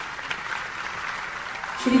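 Audience applauding steadily, with a voice starting an announcement near the end.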